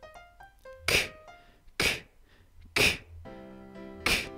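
A man saying the voiceless phonics sound 'k' (a breathy 'kuh') three times, about a second apart, over light background music that opens with a short run of melodic notes.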